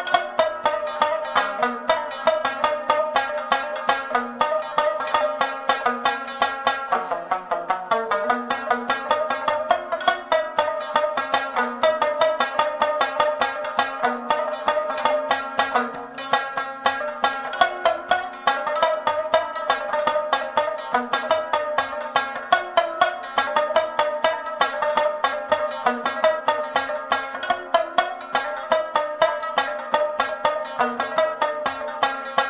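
Afghan rabab playing a fast instrumental passage of rapidly plucked notes in traditional Pashto folk music.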